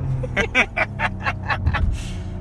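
Laughter, a quick run of short "ha" bursts, over the steady drone of the BMW M760i's twin-turbo V12 and road noise inside the moving car's cabin.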